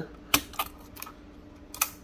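Sharp plastic clicks as a wire-harness connector is worked off the circuit board inside a Ruida HMI keypad's plastic housing: one loud click about a third of a second in, another near the end, and a few lighter taps between.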